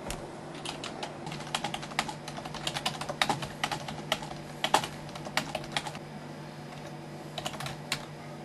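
Typing on a computer keyboard: a run of quick key clicks for about six seconds, a short pause, then a brief burst of keystrokes near the end.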